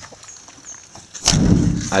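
A van's hinged steel side door swung shut: a sharp slam about a second and a quarter in, followed by a deep boom lasting about half a second.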